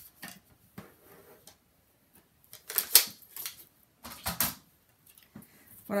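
Craft materials handled on a tabletop cutting mat: light taps and clicks of paper pieces being picked up and set down, with two brief rustling scrapes about three seconds and four and a half seconds in, the first the loudest.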